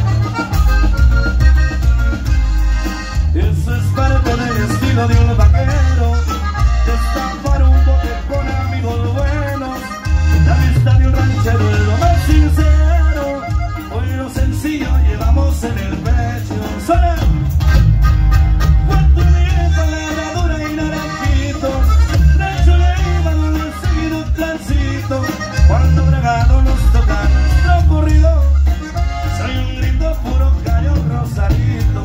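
Live norteño band playing: accordion carries the melody over guitar, electric bass and drums, with a heavy pulsing bass line.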